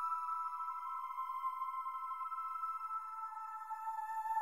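Background music of held, high, steady tones with nothing low underneath, shifting to a slightly lower chord about three seconds in.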